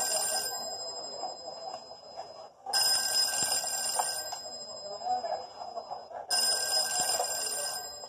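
Telephone bell ringing, heard through a television's speaker. A ring is trailing off at the start, then two more rings follow about three and a half seconds apart, each lasting a second and a half to two seconds.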